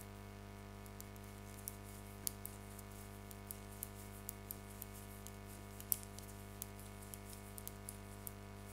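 Faint, irregular light clicks of metal knitting needles tapping together as knit stitches are worked, over a steady low hum.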